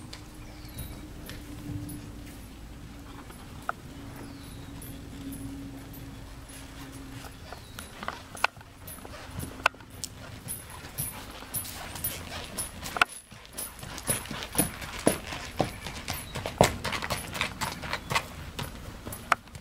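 Hoofbeats of a bay racking horse under a rider: sparse and faint at first, then a quick, even run of sharp, loud hoof strikes from about two-thirds of the way through.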